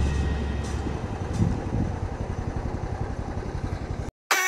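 A steady engine-like rumble with a fast, even pulse, slowly getting quieter, after the last low note of the music dies away in the first second.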